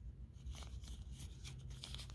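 Faint crinkling of a small clear plastic zip-lock bag being handled, a few soft crackles spread through the moment.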